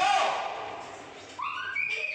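Children's high-pitched voices calling out in a classroom, one burst at the start and another in the second half with a brief lull between.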